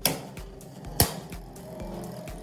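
Two spinning Beyblade Burst tops clashing in a plastic stadium: a sharp clack right at the start and a louder one about a second later, over the faint whirr of the tops spinning on the stadium floor.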